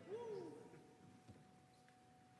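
Near silence: room tone, with a faint short hum falling in pitch right at the start and a faint steady tone after it.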